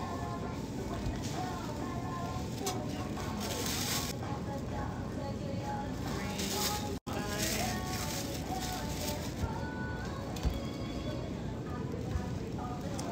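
Thin plastic produce bag crinkling as mangoes are put into it, loudest twice, about three and a half and six and a half seconds in, over background music and faint voices.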